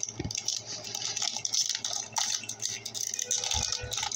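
Foil booster pack wrapper crinkling and crackling steadily as it is handled in the hand.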